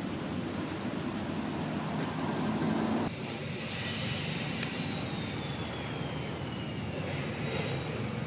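Steady outdoor background noise, a low rumble with hiss, that changes abruptly about three seconds in. After the change a faint whistle slowly falls in pitch.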